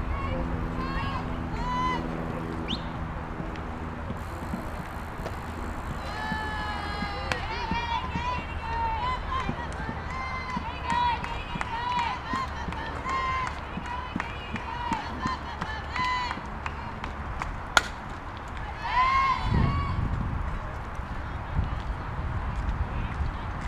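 Girls' high-pitched voices chanting and cheering in a long run of short repeated calls, the way softball players cheer from the dugout. One sharp smack comes late on.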